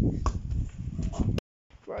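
A football being kept up with the feet: a series of short thumps about two a second over a low rumble, which cuts off suddenly about one and a half seconds in. A young male voice follows near the end.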